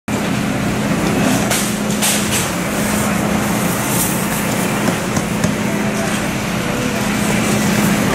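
Steady hum and background noise of a grocery store, with a few soft rustles and clicks about one and a half, two and four seconds in as a bread roll is dropped with metal tongs into a thin plastic bag.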